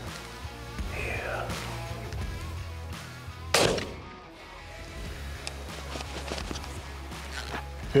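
A single rifle shot about three and a half seconds in, the finishing shot at a wounded sable bull, with its crack trailing off briefly, over steady background music.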